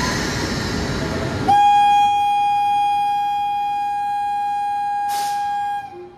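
A steady rush of locomotive and station noise, then, about one and a half seconds in, a single long blast of a WAP-7 electric locomotive's horn, one steady note held for about four seconds before it cuts off.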